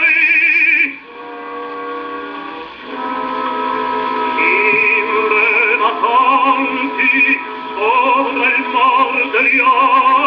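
An acoustically recorded 78 rpm disc of a baritone with orchestra, playing on a 1918 wind-up Columbia console gramophone. A held high note with wide vibrato ends about a second in, and a short, quieter orchestral passage follows. The baritone comes back in about three seconds in.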